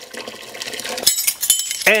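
Water pouring into a pot of sugar, then about a second in a sudden metallic clink with a bright ring.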